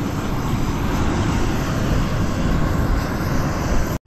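Aircraft engine noise, a steady even rush with no clear pitch, cutting off abruptly at the end.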